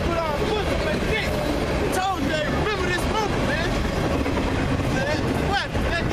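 A man talking over a steady low background rumble.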